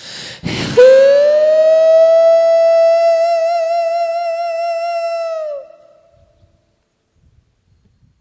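A male singer holds one long final note with a slight vibrato, scooping up into pitch at the start and stopping after about five seconds. A short burst of noise comes just before the note.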